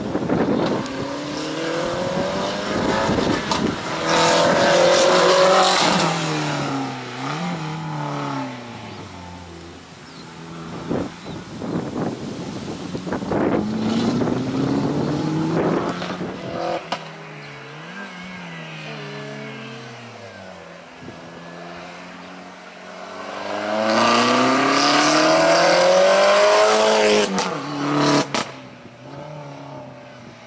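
Opel Corsa slalom car's engine revving hard and lifting off again and again between cones, its pitch climbing and dropping several times. It is loudest about four to six seconds in and again from about twenty-four to twenty-seven seconds.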